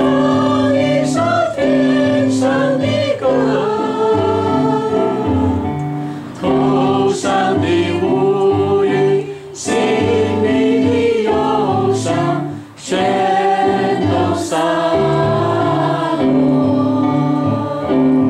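Digital keyboard playing held accompaniment chords for a gospel-style worship song, with voices singing the melody over it. There are short breaks between phrases.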